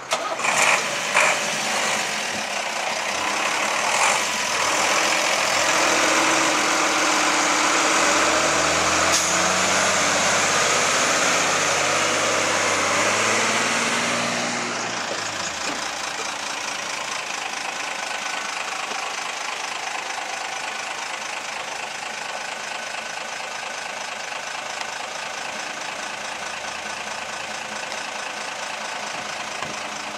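Diesel fire engines pulling away, with a few sharp knocks in the first seconds. An engine then revs up, its pitch climbing, until about halfway through, when it drops to a quieter, steady run as the trucks move off.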